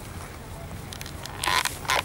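Footsteps crunching on beach pebbles, with two loud crunches in the second half over a steady low rumble.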